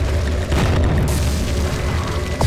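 Sound-effect boom of a wall bursting apart, hitting about half a second in, followed by a hiss of scattering rubble, over a steady deep bass drone.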